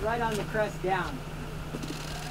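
Jeep Gladiator's engine idling with a steady low hum while the truck sits stopped on the rocks.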